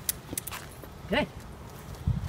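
A few light clicks of footsteps on a concrete sidewalk over a low rumble. A woman's voice says "good" once, just past the middle.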